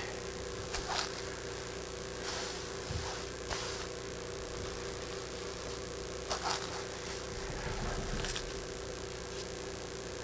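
Small scissors cutting fabric: a few short, scattered snips and rustles of the cloth over a steady low hum.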